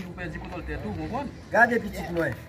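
Men's voices talking: only speech, with no other clear sound.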